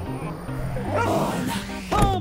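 Reggae-dancehall backing music with a steady bass line, joined about halfway through by a dog's short, pitch-bending yips and whimpers.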